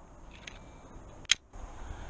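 Faint outdoor background with one short, sharp crack a little past halfway, followed by a brief drop-out.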